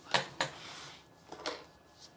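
A small ink bottle knocks twice on a sketchbook as it is set down, then the sketchbook slides briefly across the desk with a soft rustle. A fainter knock follows a little later.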